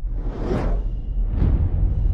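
Whoosh sound effects of an animated logo outro: two swelling whooshes, the second about a second after the first, over a steady low rumble.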